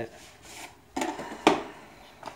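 Small cardboard product box being opened and handled: a faint rubbing and scraping of the lid, then two sharp knocks about a second in and half a second apart, the second the loudest.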